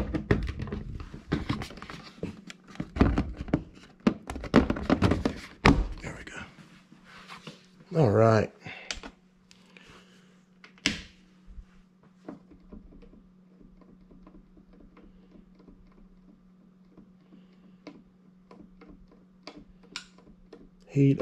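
A plastic wall thermostat being handled and snapped onto its wall base: a rapid run of clicks and knocks over the first several seconds, then one sharp click about 11 seconds in. After that it is quiet, with only a faint steady low hum.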